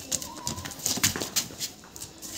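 A pit bull's paws and claws clicking and scuffing on concrete as it leaps and trots: a quick, irregular run of sharp clicks.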